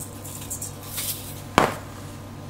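Seasoning shaken from a shaker onto raw chicken breasts in a stainless steel bowl: a few faint shakes, then a single sharp knock about one and a half seconds in.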